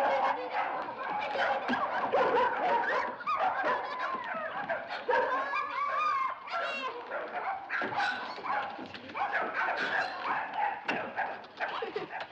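Several dogs barking, yipping and whining at once, their calls overlapping without a break.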